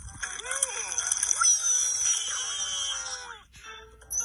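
Children's cartoon soundtrack played through a screen's speaker: the characters' high, sliding wordless vocal sounds over music with a long falling high-pitched sound effect, dropping away shortly before the end.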